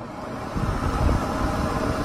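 Pet grooming dryer switched back on, its blower spinning up and stepping louder about half a second in, then running with a steady rush of air.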